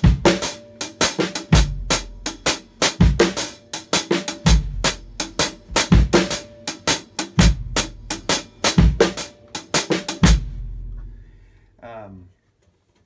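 Drum kit playing a timba marcha abajo groove with a snare backbeat over steady sticking and heavy kick-drum thumps about every second and a half. The playing stops about ten seconds in, leaving a low ring that fades.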